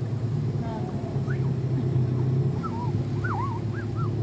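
Small boat's outboard motor running steadily, a low, even hum.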